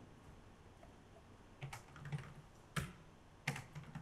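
Keystrokes on a computer keyboard as a passphrase is typed in: about six separate key clicks, starting after a quiet second and a half.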